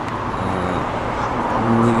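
Steady outdoor background noise with no distinct events, and a man's voice starting up again near the end.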